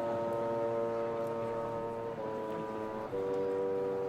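A wind band playing slow, sustained chords, moving to a new chord about two seconds in and again about a second later.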